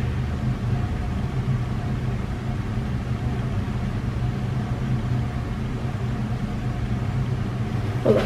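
A steady low mechanical hum with a few faint steady tones above it, unchanging throughout, with no distinct events.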